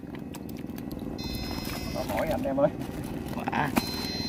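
A steady low motor drone runs throughout, with a faint thin high whine coming and going above it. A few short spoken words come in over it.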